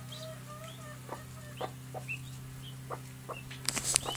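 Hen clucking softly in short low calls while small chicks peep in brief high chirps, over a steady low hum. Near the end comes a quick cluster of sharp knocks and rustles in the straw.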